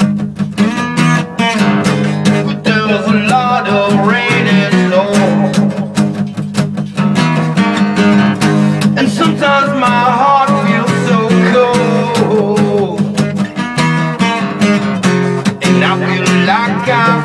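Acoustic guitar strumming chords in a steady rhythm, with a wavering, bending melody line played over it in an instrumental passage.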